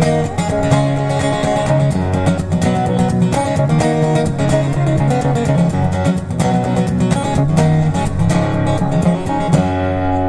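Solo steel-string acoustic guitar in drop D tuning, capoed, strummed and picked in a brisk rhythmic instrumental passage. Near the end it strikes a final chord that is left ringing.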